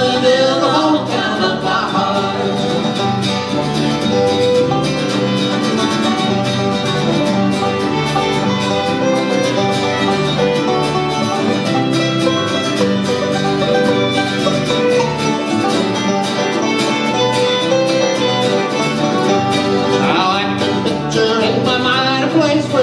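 Bluegrass band playing an instrumental break on acoustic guitars, banjo and fiddles, with steady strummed rhythm. The sung line trails off in the first couple of seconds, and singing comes back in near the end.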